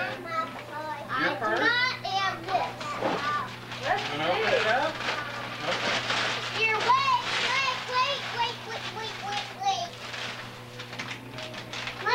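Young children's excited voices, chattering and squealing over one another, with some rustling of wrapping paper and a steady low hum underneath.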